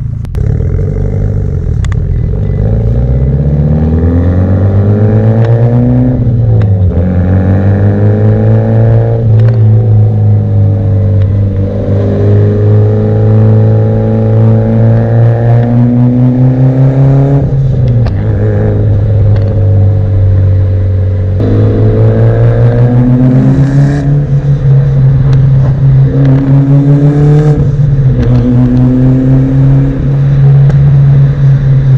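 Mitsubishi Lancer Evolution's turbocharged 4G63 inline-four engine heard from inside the cabin while driving. The revs climb and drop back at several gear changes, with a steadier stretch of cruising in the middle.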